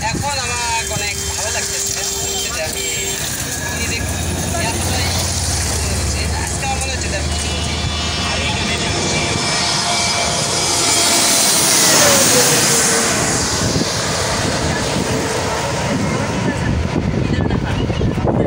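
Twin-engine jet airliner passing low overhead on final approach to land: engine noise builds to its loudest about twelve seconds in, with a whine that drops in pitch as it passes.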